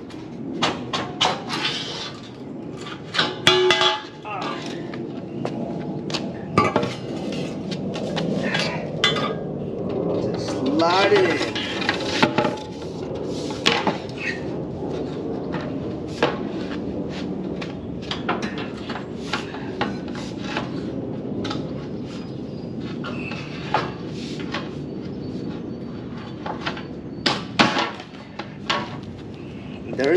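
Irregular metallic clinks and knocks as bolts and nuts are taken off and refitted on a small steel trailer frame, over a steady low background noise.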